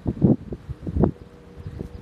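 Wind buffeting a phone's microphone in low gusts during the first second, then a quieter rumble with a faint steady hum.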